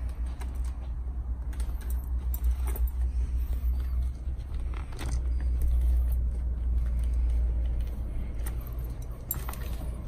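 Handling noise of a motorcycle intercom being fitted into a helmet: scattered sharp plastic clicks and rustles as parts are pressed into the liner, over a steady low rumble.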